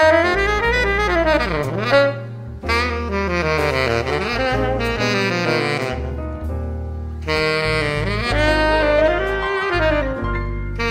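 Tenor saxophone playing a live melodic line, the phrases sliding up and down in pitch with short breaths between them, over an electronic backing with a sustained low bass.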